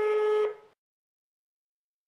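An answering machine's electronic beep: one short, buzzy beep at a steady pitch, lasting about half a second. It marks the end of a recorded message.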